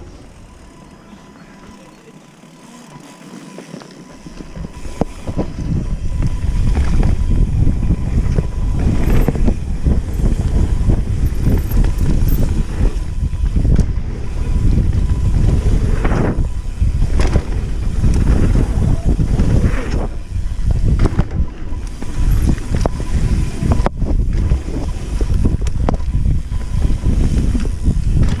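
Mountain bike ridden fast down a dirt trail, heard from a helmet-mounted action camera: tyres rolling on dirt, the bike knocking and rattling over bumps, and heavy wind rumble on the microphone. It is quiet for the first few seconds, then loud from about five seconds in as the bike picks up speed.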